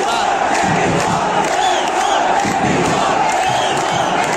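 Large football stadium crowd of many voices shouting together, loud and steady throughout.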